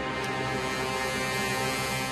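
Background music: a held, steady chord with no beat or melody moving.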